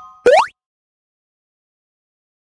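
A short cartoon sound effect, about a quarter second in: a quick pop that glides sharply upward in pitch.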